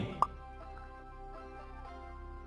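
Soft, steady background music with a short pop sound effect, a quick rising blip, a fraction of a second in. The pop is the kind that marks a chat bubble popping up on screen.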